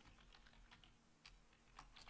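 A few faint, scattered keystrokes on a computer keyboard over near silence.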